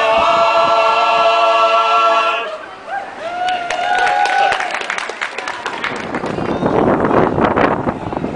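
Men's barbershop chorus singing a sustained close-harmony chord that cuts off about two and a half seconds in. Scattered clapping follows and thickens toward the end.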